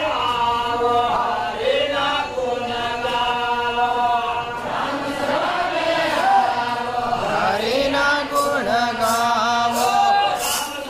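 Male voices singing the slow, drawn-out opening of a Gujarati devotional bhajan in a chant-like style, holding long notes and sliding between them. A few sharp strikes come in near the end.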